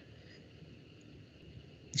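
Faint steady background hiss of a call's microphone line, with a faint high steady whine. A man's voice begins right at the end.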